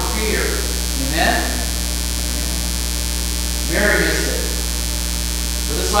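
Steady electrical mains hum throughout, with a few short bits of a man's voice about a second in and again around four seconds in.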